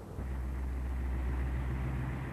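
A steady low machine rumble that starts a moment in and holds evenly.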